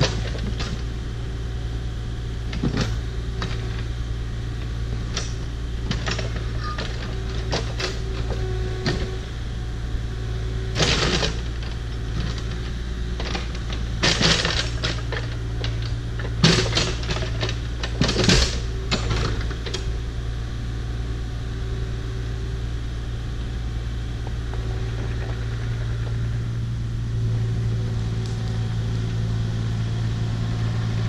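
Kubota KX040-4 mini excavator's diesel engine running steadily as it works a big rock and brush, with sharp knocks and scrapes of the steel bucket on rock clustered around the middle. Near the end the engine grows louder as the machine swings and moves off.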